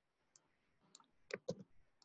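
Faint computer mouse clicks, a few small ones and then two louder clicks close together about a second and a half in.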